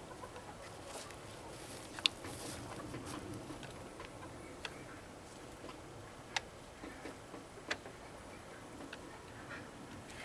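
Quiet outdoor background with a few faint, sharp ticks spaced a second or two apart, the loudest about two seconds in.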